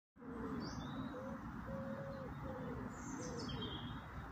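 A pigeon cooing a phrase of about five low notes, with a few high small-bird chirps about a second in and again near the end, over steady background noise.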